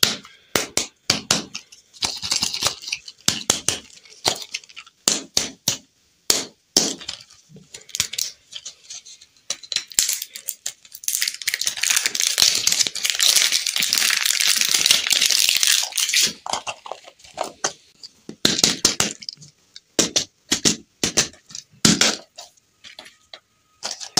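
Crinkly plastic lollipop wrapper being peeled and crumpled by hand: many sharp crackles and clicks, with a longer, denser run of crinkling in the middle.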